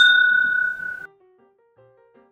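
Two glass whiskey tasting glasses just clinked together in a toast, ringing with a clear high tone that fades and cuts off about a second in. Faint music with stepped notes follows.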